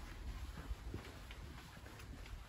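Quiet room tone with a steady low hum, and a few faint soft footfalls on carpet near the middle.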